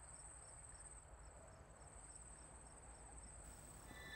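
Very quiet night ambience of crickets: a faint, steady high trill with soft chirps about three times a second.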